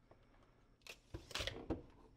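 Handling noise: a few light clicks and knocks, starting about a second in, as a plastic battery charger is set down on a rubber mat and a tape measure is put away.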